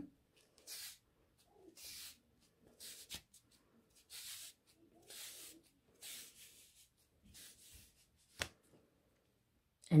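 Soft, repeated rustles of stretchy T-shirt jersey strips being pulled and stretched by hand to curl them into cords, about one rustle a second, with a single sharp click near the end.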